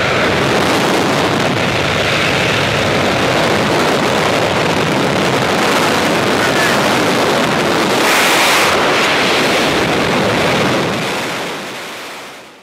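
Loud, steady rush of wind buffeting the microphone at the open door of a small skydiving jump plane and in the exit, mixed with the plane's engine noise. The noise fades away near the end.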